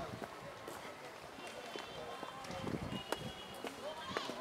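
Footsteps on a paved path, with indistinct voices of people around.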